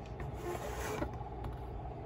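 Light handling noise from a hand moving a diecast model car on a table: a soft rub or slide for about half a second, then a few faint clicks.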